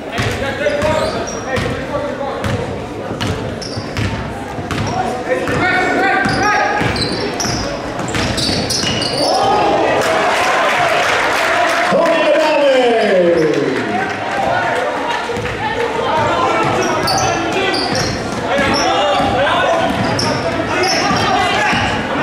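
A basketball being dribbled on a hardwood gym floor, with spectators' and players' voices echoing around the hall. About ten seconds in the crowd noise swells, and a long shout falls in pitch.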